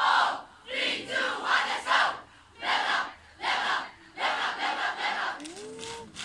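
A stand full of school pupils shouting a war cry in unison: loud short group shouts in a rhythm, about one a second with brief gaps between. Near the end a single rising tone sounds.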